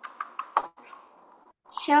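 Computer keyboard keys clicking in quick, irregular taps that stop a little over half a second in. Then a voice starts speaking near the end.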